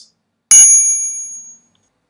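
A single bright bell-like ding struck about half a second in, ringing out and fading over about a second. It is a sound effect marking an idea.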